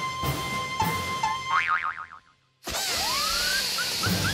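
Cartoon soundtrack music with comic sound effects: a wobbling boing that fades away about two seconds in. After a brief silence, a new music cue starts suddenly with a rising, whistle-like glide.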